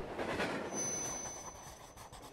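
Fading tail of a logo-intro swoosh sound effect: a rushing noise dying away, with a thin high ringing tone joining a little under a second in.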